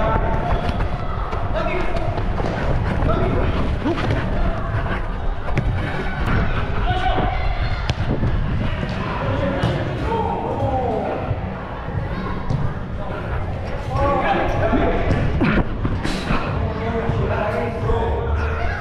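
Indoor five-a-side football on artificial turf heard from a player's body-worn camera: ball kicks and thuds, running footsteps and constant rumble from the camera's movement, with players' shouts in the background.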